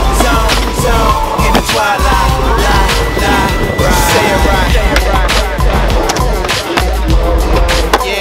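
Skateboard wheels rolling on a smooth concrete floor, with sharp clacks from the board, under hip-hop music.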